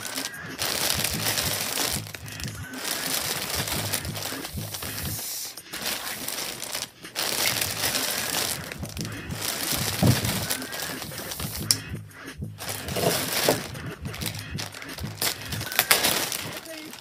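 Plastic poly mailer crinkling and rustling as it is handled and cut open, in long stretches broken by short pauses, with a few sharp clicks.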